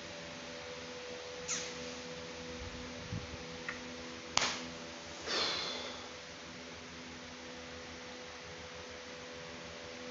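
A woman crying quietly, with a few sniffs and breaths over a steady low electrical hum, and one sharp click about four seconds in.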